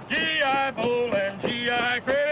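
Men's voices singing a military marching cadence in unison, in three short held phrases.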